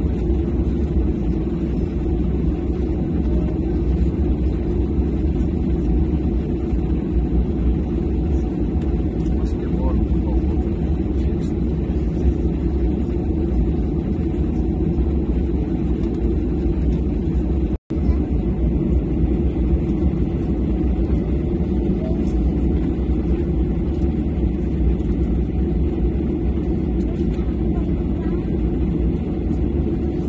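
Steady low rumble inside a parked airliner's cabin while a deicing truck sprays the wing. The sound cuts out for an instant a little after halfway.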